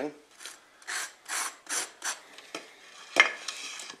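Knife spreading soft butter across a slice of crisp toast: about five short scraping strokes, two to three a second, then a sharper knock a little past three seconds in.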